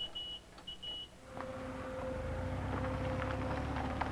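Two pairs of short, high electronic beeps in the first second, then a steady low rumble with a constant hum that comes in and holds.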